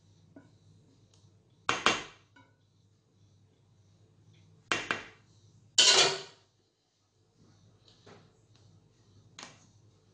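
Metal kitchenware clattering: a stainless steel mixing bowl knocked and scraped by a spatula and a small metal bowl, in a few sharp clanks about two, five and six seconds in, with fainter taps near the end.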